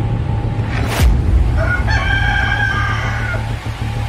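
A rooster crowing once, a cock-a-doodle-doo lasting about a second and a half, over background music; a brief swell of noise comes about a second in, just before the crow.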